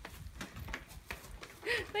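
Faint, irregular footsteps of children running across grass and pavement. A voice starts up near the end.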